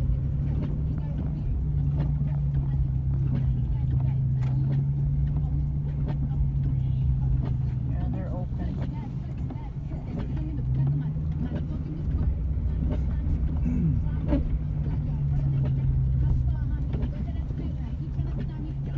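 Car engine and road noise heard from inside the cabin while driving slowly on wet pavement. There is a steady low engine hum that rises in pitch briefly about eleven seconds in, over a low rumble, with scattered light clicks.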